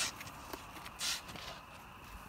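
A snow shovel scraping into granular, old snow: two short hissy scrapes, one at the start and a longer one about a second in, with faint crunches between.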